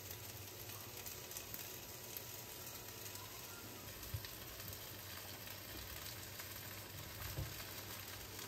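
Chicken and rice cakes frying in a nonstick pan with a faint, steady sizzle. A few soft knocks, one about halfway through and a couple near the end, come as mushrooms and fishcake are pushed off a wooden cutting board into the pan.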